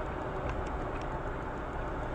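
Steady road and engine noise inside a moving car, with a few faint ticks.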